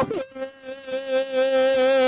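A woman singing one long held note with vibrato into a microphone, coming in just after a short break at the start.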